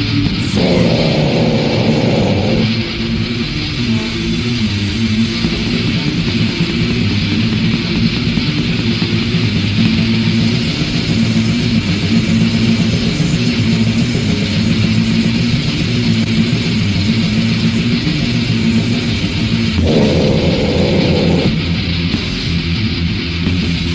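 Black/death metal from a cassette demo: distorted electric guitars, bass guitar and drums playing a dense, unbroken instrumental passage with no vocals. A higher, brighter guitar part stands out briefly just after the start and again near the end.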